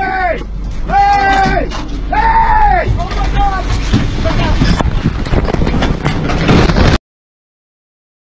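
Men on a motorboat whooping, four rising-and-falling shouts in the first three and a half seconds, over the steady drone of the outboard motor. Splashing and thuds of leaping fish around the boat follow, and the sound cuts off suddenly about seven seconds in.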